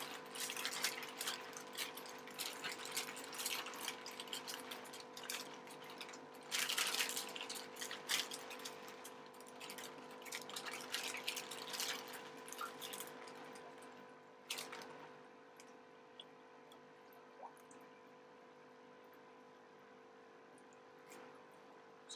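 Plastic fish bags crinkling and the water in them sloshing as they are handled at the tank's edge, in irregular bursts for about the first fourteen seconds. After that only a faint steady hum remains.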